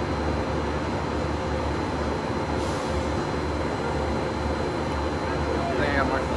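Steady low rumble with a hiss, even in level, from an unseen machine or vehicle.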